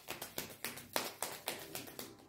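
A tarot deck being shuffled by hand: a quick run of light slaps and taps of the cards, several a second.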